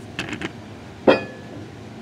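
Light clicks of a steel dial caliper being handled, then one sharper metallic click about a second in, with a brief ring.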